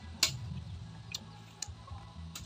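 Mouth clicks and smacks from eating ripe mango: one sharp click shortly after the start, then a few fainter ones, over a low steady hum.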